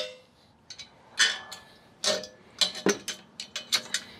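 Sharp metal clicks and clinks from the steel top link and its pin being fitted to a tractor's three-point hitch, about eight separate ticks, most of them in the second half.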